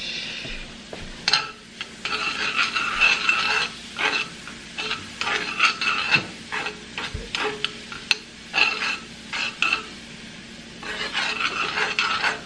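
Diced onion, bell pepper and garlic sizzling in garlic butter in a nonstick frying pan, sautéing toward translucent, while a utensil stirs them around, scraping and clicking against the pan in repeated strokes.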